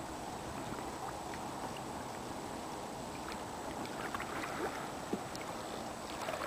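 Faint sounds of a canoe being paddled on calm water: soft paddle strokes and drips with a few small knocks over a steady light hiss.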